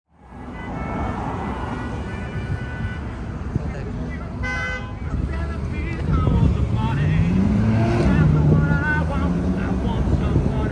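City street traffic: a steady rumble of passing cars, with a short car horn toot about four and a half seconds in, and a vehicle engine rising in pitch near the end.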